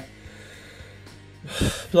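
A woman's short, sharp intake of breath between words, about a second and a half in, after a brief pause.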